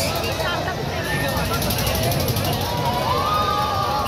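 A fairground ride in motion: a steady, loud rumble with the voices of riders and crowd rising and falling over it.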